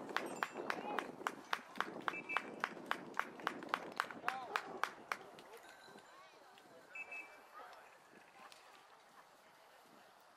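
A rapid, even run of sharp clicks, about four or five a second, that stops about five seconds in, over the murmur of spectators' voices.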